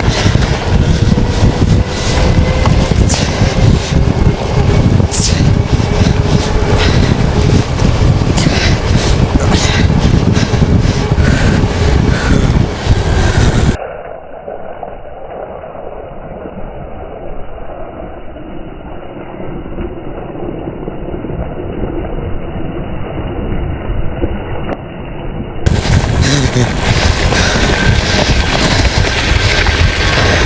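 Heavy wind buffeting on the microphone of a camera riding on a fast-moving e-bike off-road, with a faint rising whine from the motor early on as it speeds up and scattered small clicks. About halfway through the sound drops to a quieter, muffled stretch for roughly twelve seconds, then the loud wind buffeting returns.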